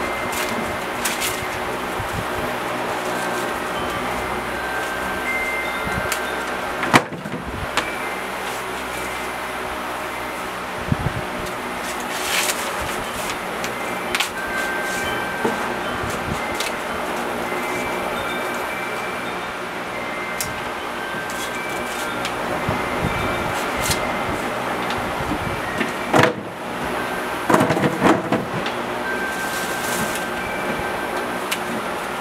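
Ears of field corn being shucked by hand: husks rustling and tearing, with occasional sharp cracks and a cluster of rips near the end. Steady background music runs underneath.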